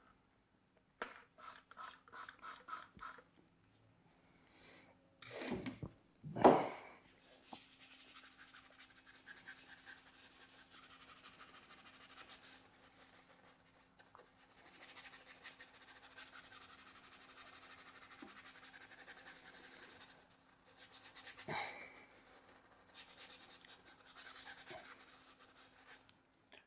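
A soft-bristled detailing brush scrubbing a wet, dirty wheel, heard as two long spells of faint, even scrubbing. A quick run of short strokes comes near the start and a couple of louder handling knocks come before the scrubbing. A steady low hum runs underneath.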